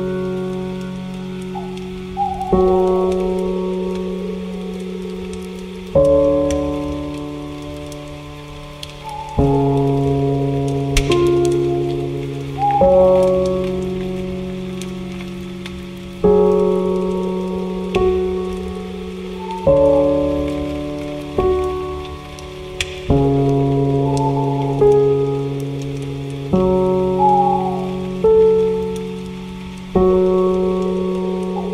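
Slow, soft piano chords, a new chord struck every two to three seconds and left to ring and fade, over a steady patter of rain.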